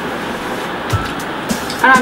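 Steady noisy background hum with a few faint clicks, then a woman's voice starting just before the end.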